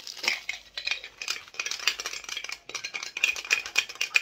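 An opened Funko Soda collectible can being handled: a rapid run of small rattles and scrapes as the plastic-wrapped vinyl figure is pulled out against the thin metal can.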